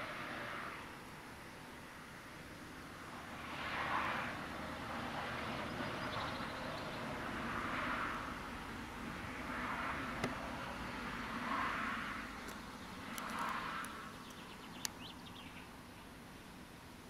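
Outdoor ambience with cars passing on a road one after another, each swelling and fading within about a second, about five in all, over a steady low background hum, with a few faint clicks.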